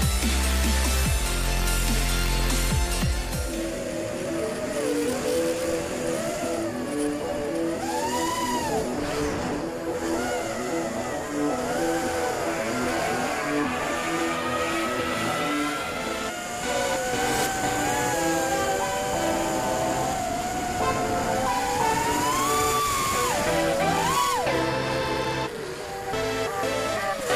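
Background music with a steady rhythmic pattern, a heavy bass dropping out a few seconds in. Over it, the quadcopter's motors and propellers whine, rising and falling in pitch as the throttle changes.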